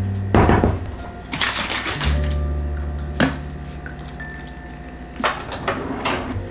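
Background music with a steady low line, over about five short knocks and clatters of kitchen things being handled: cupboard, mug and counter. The loudest knocks come about half a second in and a little after three seconds.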